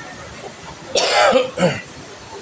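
A person coughing close to the microphone: a harsh cough about a second in, then a shorter second cough.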